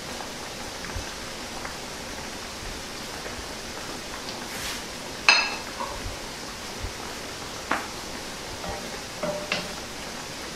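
Steady hiss of okra frying in hot grapeseed oil in a stainless steel skillet. About halfway through comes one sharp, ringing metallic clink, and a few lighter knocks follow later.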